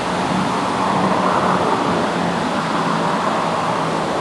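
Water pouring over a low dam waterfall: a steady, even rush of falling water.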